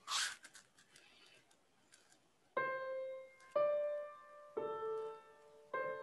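A short burst of noise with a few faint clicks, then slow piano music starting about two and a half seconds in: single notes struck about once a second and left to ring out.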